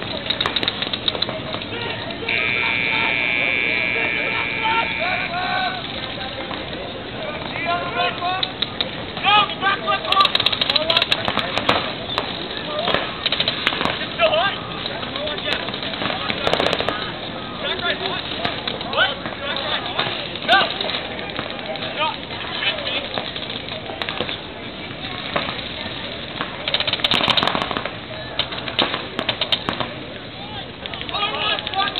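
Voices of spectators and players shouting and calling out over a paintball field, with clusters of sharp pops from paintball markers firing, thickest about ten to twelve seconds in and again near the end. A steady high tone sounds for about three seconds, starting about two seconds in.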